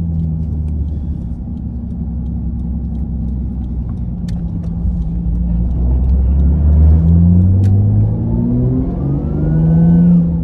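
Nissan Skyline R34 GT-T's turbocharged 2.5-litre straight-six heard from inside the cabin while driving. It runs steadily at low revs, then the revs climb over the last two seconds as the car accelerates.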